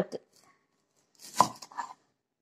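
Cleaver chopping through a red onion on a cutting board: one sharp chop about a second and a half in, followed by two lighter knocks.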